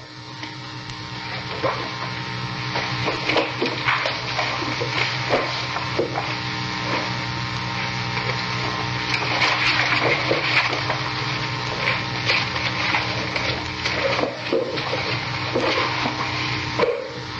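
Steady hiss and mains hum of an old recording, with irregular rustling and small clicks throughout. It grows louder over the first couple of seconds and then holds steady.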